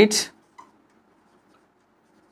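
A short spoken word at the start, then a marker pen writing faintly on a whiteboard.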